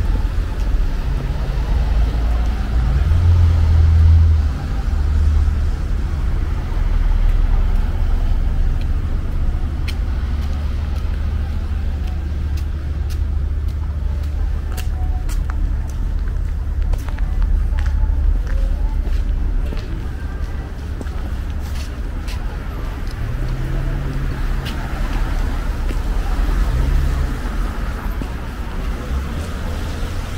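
City street traffic: cars driving past on a snowy downtown street, heard as a steady low rumble that swells as vehicles pass. Scattered light clicks come through the middle.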